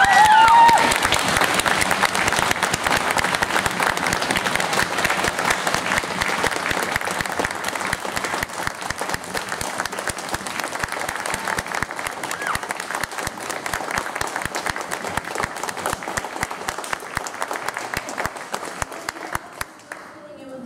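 Audience applauding, with a short rising cheer in the first second; the clapping slowly thins and fades, and stops just before the end.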